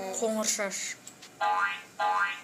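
A short rising sound effect from a computer English-learning program, about one and a half seconds in, with a second one starting at the very end.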